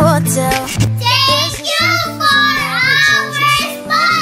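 Pop music with a young girl's high singing voice over it, long sung notes swelling and fading from about a second in.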